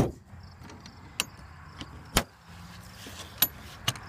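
A few separate sharp knocks and clicks from handling the trailer's metal-trimmed storage chest, its lid and draw latches clacking. The loudest knock comes at the very start, and two clicks close together come near the end.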